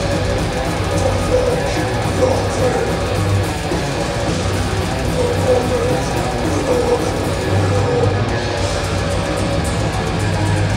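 Death metal band playing live: distorted electric guitars, bass guitar and drums in a dense, loud, continuous wall of sound.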